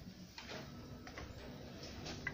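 Faint light clicks and knocks as a Lukas SP 333 E2 battery hydraulic spreader is handled and set down on a tiled floor, over a low steady hum.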